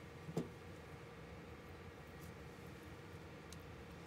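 Quiet room tone with a faint steady hum, broken by one brief soft tap about half a second in and a faint tick later, as battery cells are handled on the bench.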